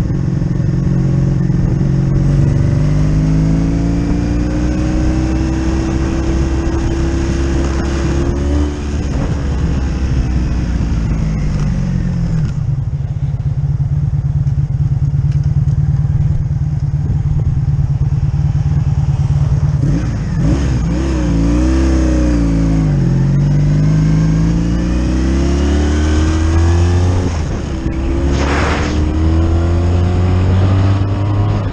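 1985 Honda V65 Sabre's 1100cc V4 engine heard from on the bike, climbing in pitch as it accelerates, then falling as it slows. It runs steadily for several seconds, wavers up and down with blips of the throttle, and climbs again as it accelerates away. A brief hiss comes near the end.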